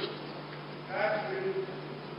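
A man's voice calls out a short, drawn-out word about a second in, over a steady low hum.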